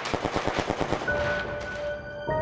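Rapid burst of machine-gun fire, about a dozen shots a second, over trailer music. About a second in, it fades into a held high tone.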